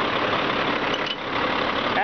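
Caterpillar C-12 diesel engine in a Sterling day-cab truck idling steadily.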